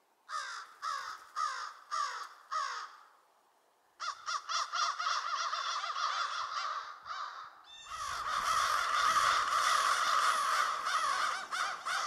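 American crows cawing: five single caws in a row, each dropping in pitch, then a short pause. Many crows then caw over one another, thickening into a dense chorus about eight seconds in.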